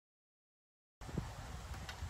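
Dead silence for about a second, then faint outdoor background with a low rumble and a few light knocks.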